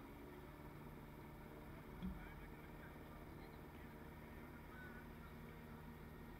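Near silence: a faint steady low hum of outdoor background, with one soft thump about two seconds in.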